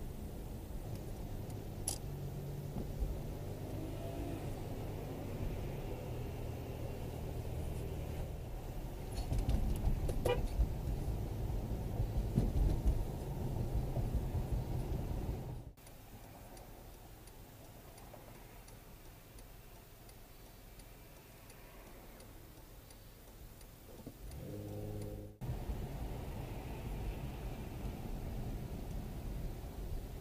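Engine and tyre rumble inside a moving car's cabin, picked up by a dash camera's microphone. The sound drops suddenly quieter about 16 s in and comes back about 25 s in. Just before it comes back, a short steady pitched tone sounds for about a second.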